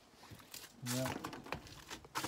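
Footsteps crunching through old, crusted snow, a few steps in a row.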